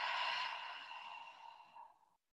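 A woman's long, audible exhale through the mouth, a breathy rush of air that slowly fades and cuts off suddenly near the end.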